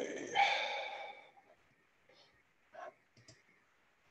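A drawn-out spoken word trails off in the first second, then a few short, soft clicks of a computer mouse, about half a second apart, as a chart symbol is selected.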